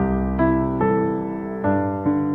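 Slow background piano music, with a new chord or note struck about every half second.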